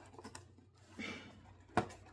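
Handling of a plastic drink bottle and its packaging: a faint brief rustle about halfway, then one sharp click near the end.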